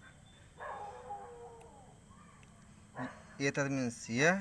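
A faint animal call in the background, one drawn-out cry with a wavering, slightly falling pitch that lasts about a second and a half from about half a second in; a man's voice starts near the end.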